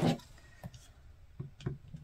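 A few faint clicks and taps as an acrylic quilting ruler and rotary cutter are handled on a cutting mat, just before trimming.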